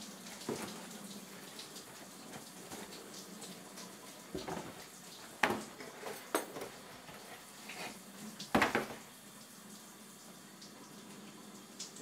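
A cardboard pizza box being handled and set down on a floor: a few scattered knocks and rustles, the loudest a little past the middle and about two thirds of the way through, over a faint steady hiss.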